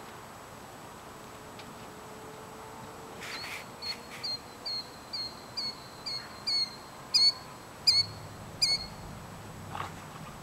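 A bird giving a rapid series of about a dozen short, sharp high calls, roughly two a second, growing louder before stopping; an alarm or mobbing call at a dog chasing it. A single soft knock comes near the end.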